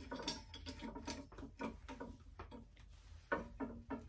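Faint scattered clicks and light taps of a metal tool arm and its laser-pointer mount being handled, over a low steady hum.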